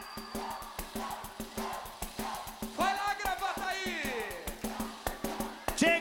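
Live band playing a fast, steady beat driven by shaker-like percussion, with a drawn-out vocal call about three seconds in that falls in pitch at its end, and another starting just before the end.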